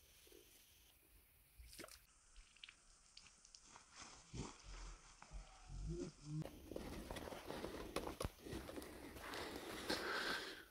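Faint rustling and light crunching of footsteps on dry grass, with scattered small clicks. It is near silent for the first few seconds and becomes busier from about halfway.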